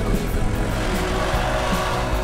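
Volkswagen T3 van driving off, its engine running steadily, with background music laid over it.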